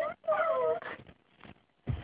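Child's voice mewing like a kitten: a short high call, then a longer one that falls in pitch. A soft thump comes just before the end.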